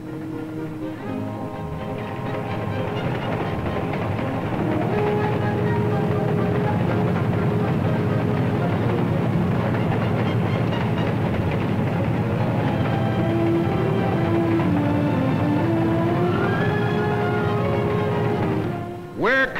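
Film music with a moving melody, mixed over the steady rumble and clickety-click of a train running on rails. The sound builds over the first few seconds, then holds steady.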